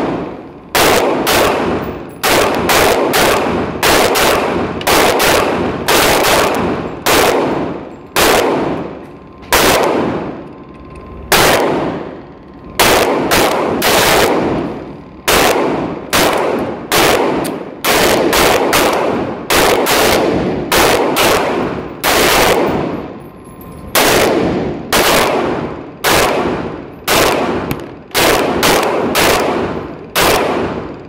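Taurus PT111 G2 9mm pistol fired round after round in an indoor range, about one to two shots a second with a few short pauses, each shot echoing briefly off the walls.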